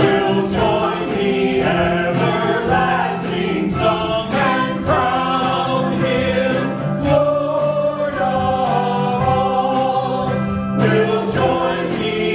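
Church worship team of men and women singing a worship song together over instrumental accompaniment with a steady beat.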